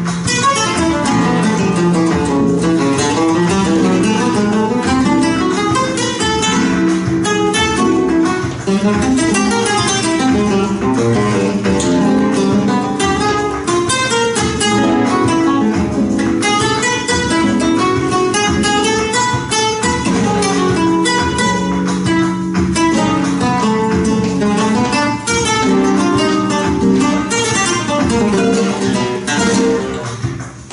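Two flamenco guitars playing a duet: fast plucked melodic runs over strummed chords.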